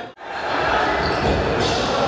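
Futsal game sound in a large hall: a ball bouncing and being kicked on the wooden floor, with players' voices echoing. The sound cuts out briefly just after the start, at an edit, then returns.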